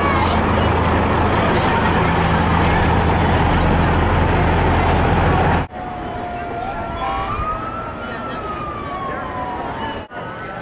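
A loud steady rumble with a low hum for a little over five seconds. Then it cuts off suddenly, and an emergency vehicle's siren wails once, slowly rising and falling, over quieter street noise.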